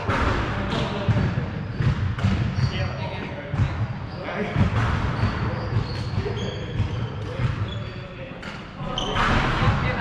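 Footsteps thudding and sports shoes squeaking on a wooden sports-hall floor, with indistinct voices, all echoing in the large hall.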